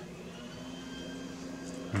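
Low, steady background hum with no distinct events, faint beside the speech around it.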